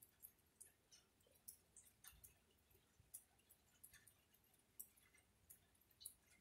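Near silence with faint, irregular ticks of rain dripping, about two or three a second.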